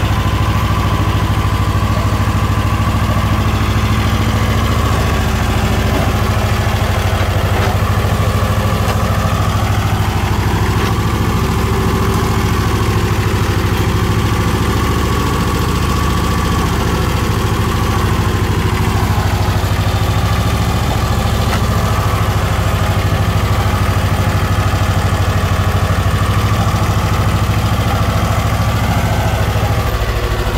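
Engine of a small vintage tractor running steadily at a constant speed while the tractor sits bogged in deep mud.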